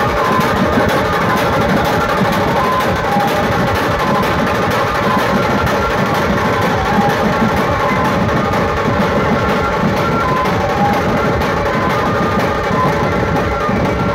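Dhumal band playing: large barrel drums struck with curved sticks and a small side drum keep a dense, driving rhythm under a repeating melody line, loud and continuous.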